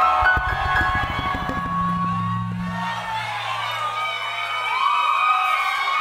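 Live konpa band playing between vocal lines: a fast run of low drum hits over held bass notes in the first half, with the crowd cheering and whooping.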